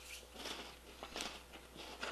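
Faint, irregular crunching of a crisp chocolate wafer being chewed, a few soft crunches.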